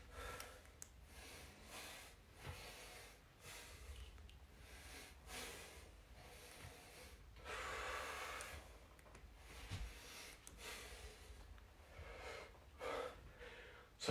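A man breathing hard as he works through bench dips: faint, short puffs of breath about once a second, with one longer, stronger breath about halfway through.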